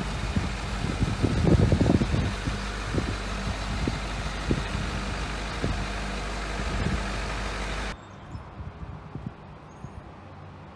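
Ford 6.7L Power Stroke V8 turbo-diesel of a 2011 F-550 idling steadily, with wind buffeting the microphone in the first couple of seconds. About eight seconds in, the sound cuts off abruptly to a much quieter background with a few faint clicks.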